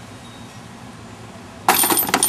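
A disc hits the hanging steel chains of a homemade disc golf basket near the end: a sudden metallic clash and jingle of chains as the putt goes in.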